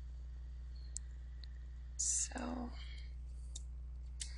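Three faint, sharp clicks spaced irregularly, from a computer mouse and keyboard as a spreadsheet formula is edited. A brief murmured breath comes about halfway through, over a steady low hum.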